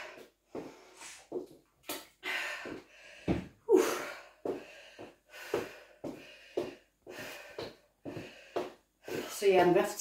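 A woman breathing hard between high-intensity exercise intervals, with a short loud breath every half second to a second. She starts speaking near the end.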